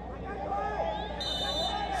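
Referee's whistle blown once, a steady high blast of most of a second near the end, signalling the free kick to be taken.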